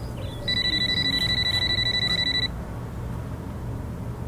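Cordless phone ringing once: a single high, fast-trilling electronic ring lasting about two seconds, starting about half a second in.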